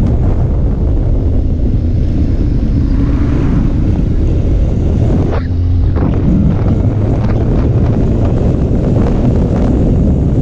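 Heavy wind buffeting on the microphone of a riding motorcycle, with the engine's steady tone faintly underneath. About halfway through, an oncoming car sweeps past.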